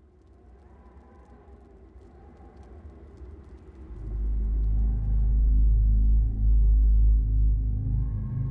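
Cinematic film soundtrack: a faint ambient drone with slow gliding tones swells gradually, then a deep rumble comes in about halfway through and holds loud.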